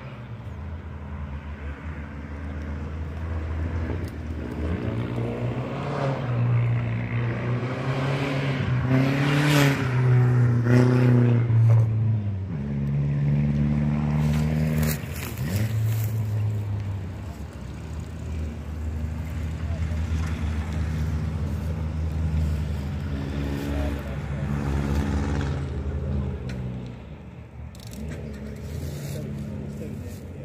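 Race car engines out on the track, their revs climbing and dropping with gear changes as the cars pass, loudest about ten seconds in, with another pass building later on.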